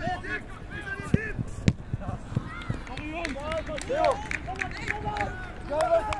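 Players and spectators shouting short calls across an outdoor football pitch during an attack on goal. Two sharp thuds of the ball come about a second in and half a second later.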